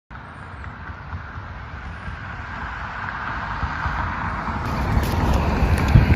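A road vehicle's engine and tyre noise, growing steadily louder as it approaches.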